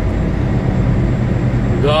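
Semi truck's diesel engine running at low speed, a steady low rumble heard inside the cab as the truck rolls slowly forward. A man's voice starts near the end.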